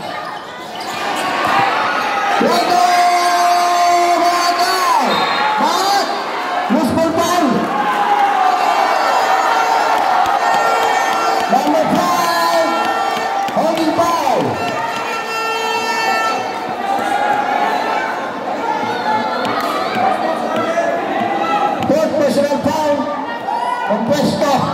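Basketball bouncing on the court amid a continuous din of a large spectator crowd, with shouting voices throughout.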